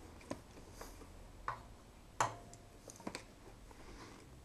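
A handful of light clicks and taps from soldering work at an open FPV video receiver's metal case and circuit board, the loudest a little past two seconds in.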